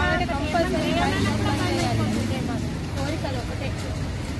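A woman speaking into news microphones, with a steady low rumble of street traffic behind.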